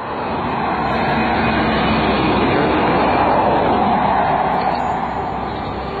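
A vehicle passing on the road: a rushing noise that swells to its loudest about three seconds in and then eases off.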